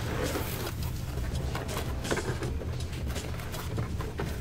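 Cardboard box being handled and its flaps opened, with scattered light rustles and scrapes of cardboard, over a steady low hum.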